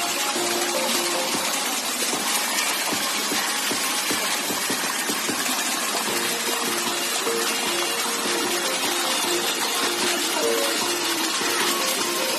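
Shallow stream water rushing steadily over rocks, under background music whose melody becomes clearer about halfway through.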